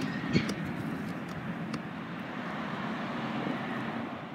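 Steady outdoor background noise with a single short click about half a second in.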